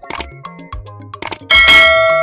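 A bell-like ding sound effect sounds loudly about one and a half seconds in and rings on, fading slowly. It plays over a music track with a steady beat and bass line.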